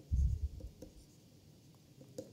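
Stylus writing on a tablet screen: faint taps and scratches as a word is handwritten, with a low thump just after the start.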